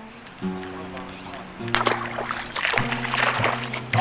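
Background acoustic guitar music, held notes changing about once a second. From a little under halfway in, splashing water joins it.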